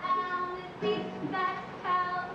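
A woman singing a live song in a high voice over a strummed acoustic guitar, holding each note for about half a second.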